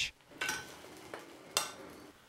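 A metal fork and spoon, held in chopsticks, scrape and knock against a non-stick frying pan as fried eggs are broken up. There is a knock about half a second in and a sharper clink at about one and a half seconds, with scraping between them.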